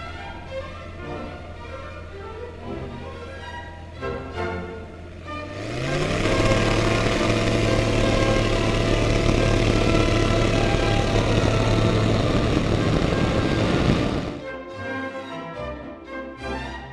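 Zenith CH701 light aircraft's engine and propeller, at a low steady hum under music, then run up to full power about five seconds in. The pitch rises and then holds steady and loud for a takeoff roll, until the sound cuts off abruptly about two seconds before the end, leaving the music.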